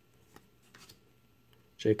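Faint, brief rustles of Topps baseball trading cards being slid from the front of a hand-held stack to the back, a couple of soft swishes in the first second.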